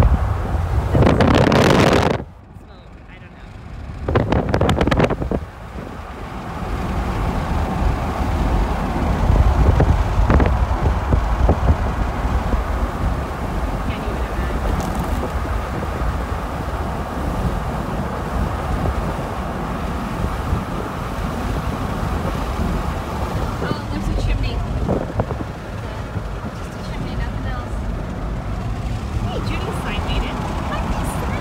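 Steady road and engine noise of a moving car with wind rushing across the microphone. It drops suddenly quieter about two seconds in for a couple of seconds, then surges back and runs on evenly.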